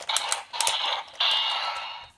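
Plastic clicks of the DX VS Changer toy gun being worked, then an electronic sound effect from its small built-in speaker: a harsh, noisy tone that steps up about halfway through and holds.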